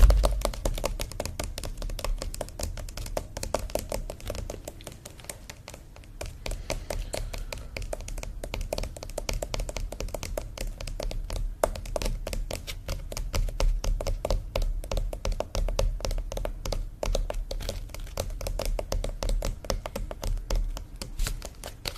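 Fingertips tapping quickly on a stretched painting canvas, a dense and continuous run of taps, with a low thump right at the start.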